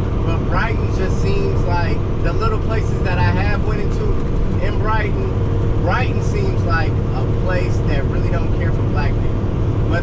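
Steady low drone of a semi-truck's engine and road noise heard inside the cab at highway speed, under a man's talking voice.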